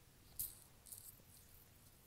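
Near silence: room tone, with a faint short click about half a second in and a few tiny ticks around a second in.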